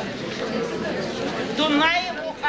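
Indistinct chatter of many people talking at once, with one voice coming through louder near the end.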